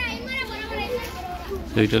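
A crowd of people talking, with children's voices chattering and calling. A man's voice speaks near the end.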